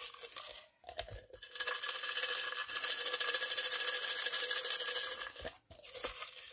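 Small folded paper slips shaken inside a black plastic cup to mix them, rattling rapidly for about four seconds after some brief handling sounds.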